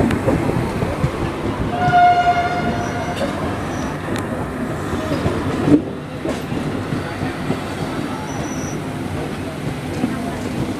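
Express train running, heard on board an LHB coach: a steady rumble and rail clatter. About two seconds in, a locomotive horn sounds once, one steady note lasting about a second and a half.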